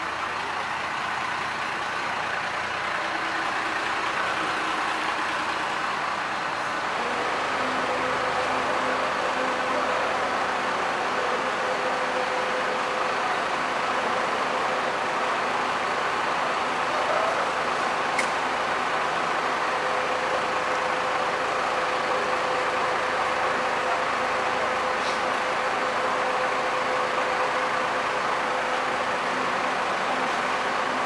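Large coach bus's diesel engine running steadily close by as it pulls up and idles, a steady hum with a faint whine that settles in about a quarter of the way through.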